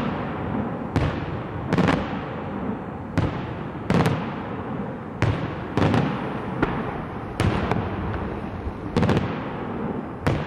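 Daytime aerial firework shells bursting overhead: about a dozen sharp bangs at an uneven pace of roughly one a second, with a steady rumble between them.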